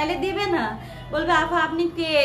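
A woman speaking, with music in the background.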